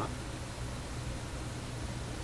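A steady low mains hum under a hiss from a vintage Viking tube receiver running on reduced supply voltage while its tubes warm up. The hum comes from the power supply, whose worn filter capacitor is blamed for it.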